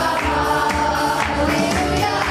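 Church worship team singing a praise song, amplified women's lead vocals with group voices behind, over a Yamaha PSR-SX900 arranger keyboard accompaniment.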